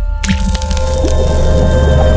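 Animated logo sting: a wet splat sound effect about a quarter second in, followed by a sustained low drone with held musical tones.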